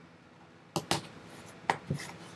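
A few sharp clicks of a blade being brought out and set to a sealed cardboard box: two close together about a second in, and two more near the end.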